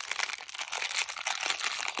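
Thin clear plastic wrap on a roll of washi tape crinkling as fingers pick and pull at it to open it: a steady run of small crackles.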